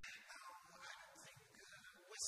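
A man's voice speaking quietly into a microphone, with short breaks.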